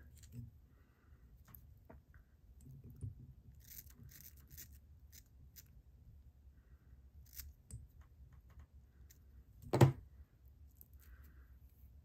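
Scissors snipping the ends of a clump of bucktail hair to square them: soft snips and rustles, with one louder, sharp click late on.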